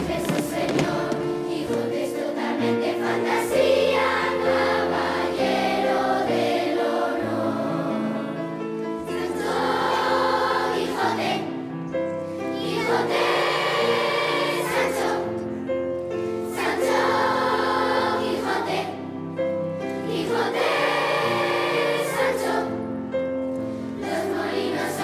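A large children's choir singing together, with phrases of held notes, over a low instrumental accompaniment.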